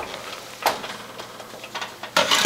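Rustling handling noise as a hand-held camera is swung around, with one sharp click about two-thirds of a second in.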